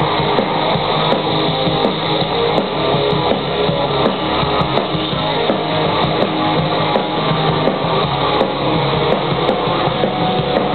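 Rock band playing live: electric guitars and drum kit in a passage with no singing, heard through a crowd-held camera microphone.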